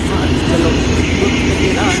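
Steady low engine rumble heard inside a truck cab, with a man's voice starting faintly near the end.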